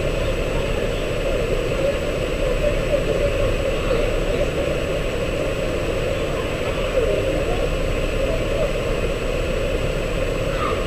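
Steady, unchanging running noise like a vehicle engine idling, muffled as if the body-worn camera's microphone is covered, with faint wavering voices underneath.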